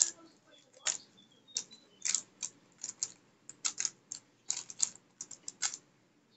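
A stickerless MF3RS 3x3 speedcube being turned fast: its plastic layers clack in quick clusters of turns separated by short pauses, the loudest clack right at the start.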